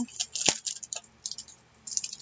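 Paper and a letter-sticker sheet being handled: light crackling and rustling, with one sharp tap about half a second in.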